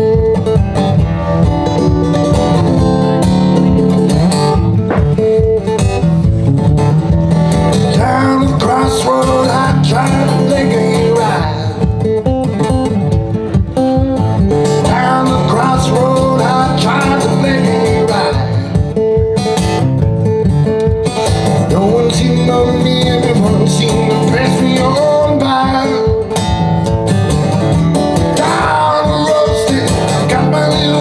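Acoustic guitar strummed in a steady rhythm, with a man singing a blues song in phrases that start about eight seconds in, heard through a live PA.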